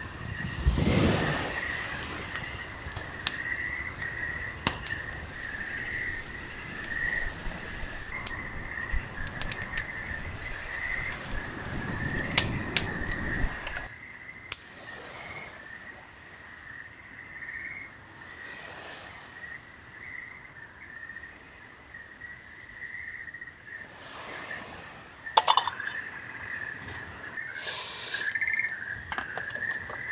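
Wood campfire crackling with scattered sharp pops and a couple of short whooshing swells, over a steady high-pitched chorus of night insects. About halfway through the fire drops back and sounds farther off, with only occasional pops.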